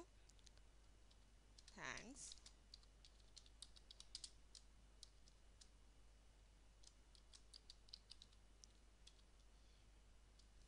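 Faint computer keyboard typing: scattered keystroke clicks, in small runs, as a short line of text is typed. A brief voice sound, falling in pitch, about two seconds in.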